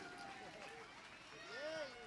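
Faint, distant voices, with one voice rising and falling briefly near the end.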